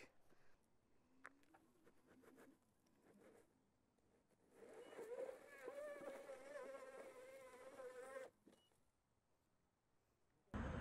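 Inmotion V11Y electric unicycle's hub motor whining under heavy load as its tyre spins in loose dirt on a hill climb: a faint, steady buzzing tone that starts about halfway through and stops abruptly some three and a half seconds later.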